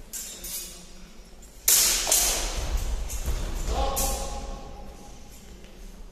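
A sudden loud clash of steel fencing swords a little under two seconds in, followed by a few seconds of noise in the hall with a short shout about four seconds in, as the fencing exchange ends.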